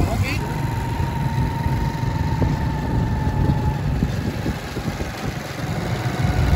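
Small motorcycle engines running while riding along a road, with a steady low rumble and wind rushing over the microphone. A thin, steady whine sounds from about half a second in until nearly four seconds.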